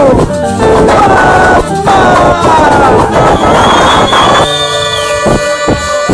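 A live band playing loud, recorded so loud that the sound is distorted, with some crowd noise mixed in. Gliding tones in the first half give way to a held chord about two-thirds of the way through, punctuated by a couple of sharp hits near the end.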